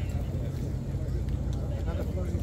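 Wind rumbling on the microphone in the open air, a steady low buffeting, under faint conversation.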